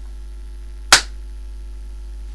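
A single sharp hand clap about a second in, made as a sync mark to line up separately recorded audio and video, over a steady low mains hum.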